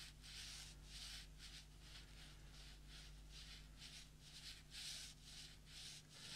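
Faint, repeated short swishes of a wet Fuumuui synthetic squirrel watercolour brush stroking across watercolour paper, about two or three strokes a second, over a low steady hum.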